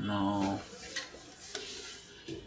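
A man's voice in a brief drawn-out hesitation sound, held on one low pitch for about half a second, then a few faint clicks.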